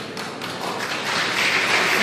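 Audience applause, starting as scattered claps and thickening into steady clapping that grows louder.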